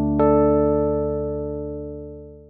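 Closing jingle on a piano-like keyboard: a final chord, struck again with a higher note just after the start, left to ring and slowly fade.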